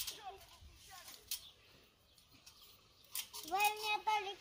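A child's voice, faint at first, with a few short knocks in the first second or so; near the end a child starts a long, sung-out note.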